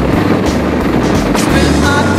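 Background music: an instrumental stretch of a song with a bass line and a few drum strikes, and no singing at this moment.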